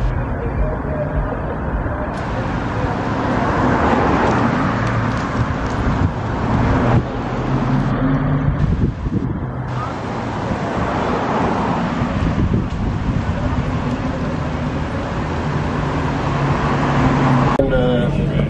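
City street traffic: vehicle engines running with a steady low hum over road noise.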